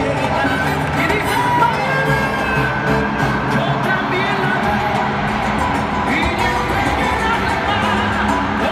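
A live salsa band playing loudly through a stadium sound system, with singing over it, recorded from within the audience.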